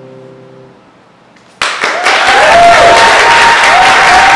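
The final chord of an electronic keyboard rings out and fades away, then, about a second and a half in, an audience breaks into loud applause, with a few voices calling out over the clapping.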